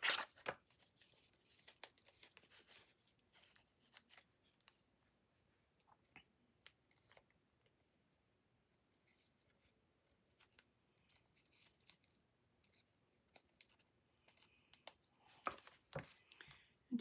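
Faint, scattered small clicks and rustles of hands at work with papercraft supplies: glue dots being peeled off their roll and a twine bow and card stock being handled, with short quiet gaps.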